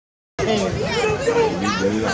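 A short gap of dead silence at the start, then many voices of spectators in the stands talking over one another.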